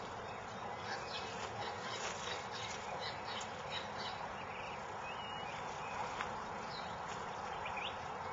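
Quiet outdoor ambience: a steady hiss with a few faint, short bird chirps scattered through it.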